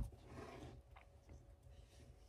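Tarot deck being cut by hand, faint: a soft tap at the start, a light papery rustle, and a small click about a second in, over near silence.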